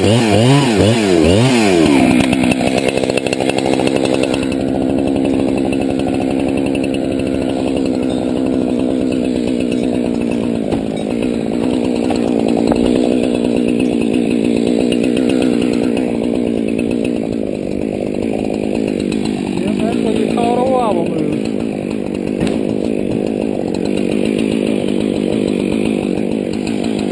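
Husqvarna chainsaw revving up and down for the first couple of seconds, then running steadily at an even pitch.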